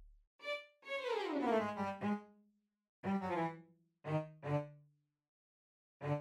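Software string instrument in Logic Pro sounding short single notes one at a time with gaps between, as notes are auditioned while being entered in the piano roll. About a second in, one longer note slides downward in pitch.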